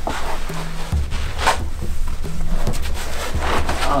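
Background music with a low, held bass line that steps between notes, and a brief scrape about a second and a half in.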